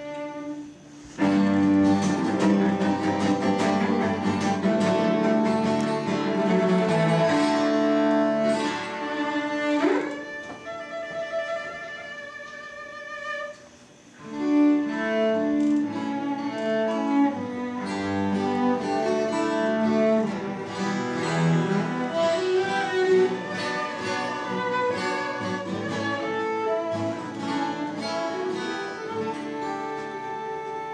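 Solo cello played with the bow. About ten seconds in there is a quick upward slide to a high held note and a few seconds of quieter high playing. Fuller, lower playing resumes at around fourteen seconds.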